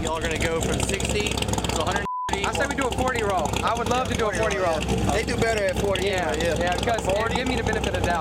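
Low steady rumble of idling cars under indistinct chatter from a group of people, with a brief high-pitched beep about two seconds in while the other sound drops out.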